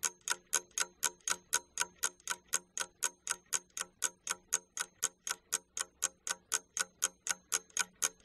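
A ticking clock sound effect, an even run of sharp ticks at about four to five a second, timing the pause given to pupils to answer a quiz question.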